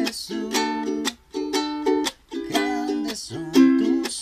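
Fender ukulele strummed in a steady rhythm of down and up strokes on chords, with a muted chop stroke cutting the sound off about once a second.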